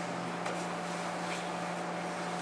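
Room tone: a steady hum over a background hiss, with a few faint rustles as the two grapplers shift position on the mat.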